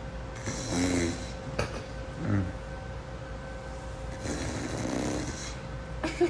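Quiet room with a steady faint hum, broken by a few short, soft vocal sounds from a person: one about a second in, another just after two seconds, and a longer, hissier one around four to five seconds.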